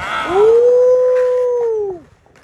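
A single long howling call, sliding up at the start, held steady for about a second, then falling away and stopping near the end.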